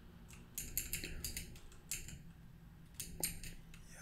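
Computer keyboard keys tapped quietly: a quick run of several keystrokes about a second in, a single tap or two after, and a few more near the end.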